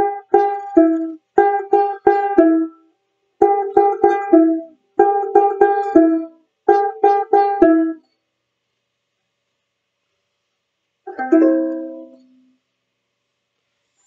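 Banjolele (banjo ukulele) picking a short riff of quick, bright notes on the third and fourth frets of the E and C strings, played five times over in the first eight seconds. After a pause of about three seconds, one strummed chord rings out near the end.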